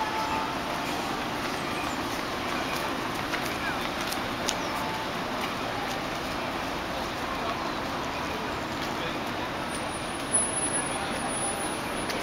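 Outdoor ambience of a busy car park: a steady hum of traffic with indistinct voices of passers-by, and a brief knock about ten seconds in.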